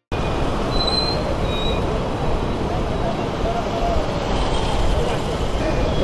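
Steady street traffic noise with faint, indistinct voices in the background.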